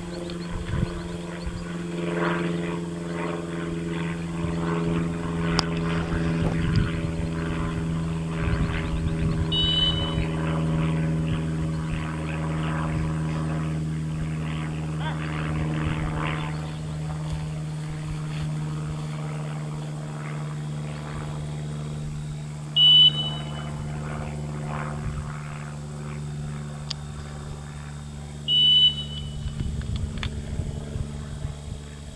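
Three short single blasts of a dog-training whistle, each a flat high tone about half a second long. The first, about ten seconds in, is faint; the two near the end are loud. They fit a handler's stop whistle to a retriever swimming a water blind. Under them a steady low hum runs throughout, with faint scattered murmur.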